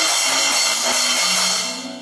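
A cymbal on a child's drum kit struck hard once and left ringing, its wash slowly dying away over about two seconds, the final crash at the end of the song. A few low held notes of the backing music sound under it.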